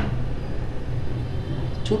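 Steady low rumble of a hotpot of broth at the boil on its burner, with a light clink near the end.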